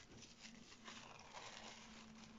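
Near silence with faint rustling of thin tissue paper being folded and pressed by hand.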